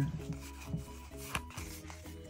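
Pokémon trading cards sliding and rubbing against each other as they are thumbed through a hand-held stack, with a few short scrapes, over faint background music.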